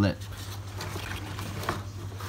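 Cardboard egg-crate flats being lifted and shuffled by hand, a soft, irregular crackling and scraping of paper pulp, over a steady low hum.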